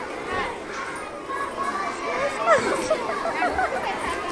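Several young children's high voices chattering and calling out over one another, with background voice babble.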